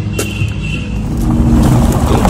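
A car driving, its engine and road noise running steadily and growing louder about a second and a half in. There is a single sharp click near the start.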